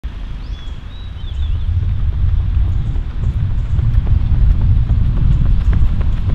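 A runner's quick footfalls on an asphalt road, over a loud low rumble that builds over the first two seconds.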